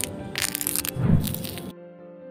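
Crackling, crunching scrape sound effect for a knife scraping over skin, with its loudest crunch about a second in, over soft background music. The crunching cuts off suddenly near the end, leaving only the gentle piano music.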